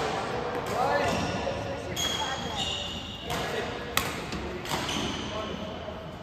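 Badminton rally: a few sharp racket-on-shuttlecock hits, the loudest about four seconds in, with short high squeaks of court shoes on the floor in between.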